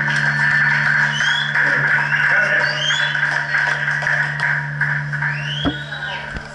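Live rock band's electric guitars and bass holding the song's final chord through the amplifiers: a steady held drone with a few short rising squeals above it, dropping off slightly near the end.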